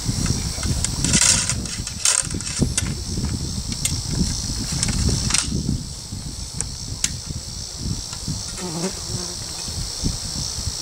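A steady, high-pitched chorus of insects over a low rumble, with a short hiss about a second in and a few sharp clicks, at about two, five and seven seconds.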